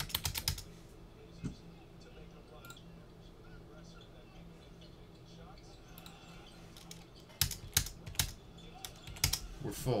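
Keystrokes on a computer keyboard in short bursts: a quick run at the start, then two more runs near the end, with a faint steady hum in between.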